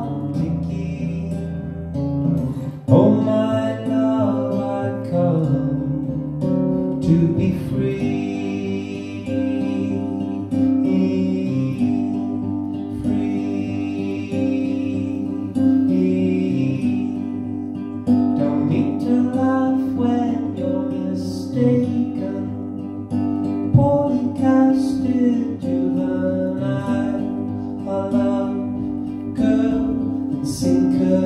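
Acoustic guitar strummed in a steady accompaniment, with a man singing over it at times.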